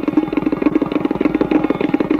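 Tabla played in a very fast, continuous run of strokes, a rapid even roll on the pair of drums with the tuned pitch of the drumheads ringing through.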